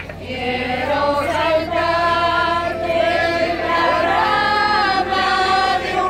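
A mixed village folk choir of men's and women's voices singing together in long held notes; a new phrase starts about half a second in.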